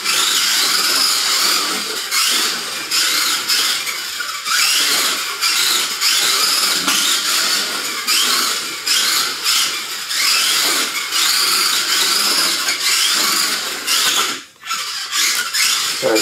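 Small electric motor and gears of a front-wheel-drive Kyosho Mini-Z RC car whining as it laps a tight track. The pitch rises and falls over and over with the throttle through the corners. The sound drops out briefly about a second and a half before the end.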